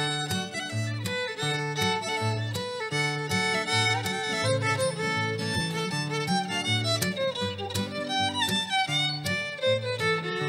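Fiddle playing a lively melody over acoustic guitar keeping a steady rhythm of alternating bass notes and strums: an instrumental break in a live old-time/country song.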